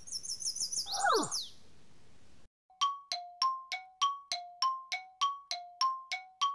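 Cartoon sound effects: a quick high, twittering bird-like chirp, with a whistle-like tone falling in pitch about a second in. From about halfway comes an even run of light chime strikes, about three a second, alternating between two notes like a glockenspiel or marimba.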